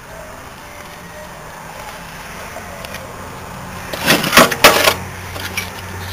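Steady outdoor background noise with a faint low hum. About four seconds in comes a short, loud burst of a man's voice.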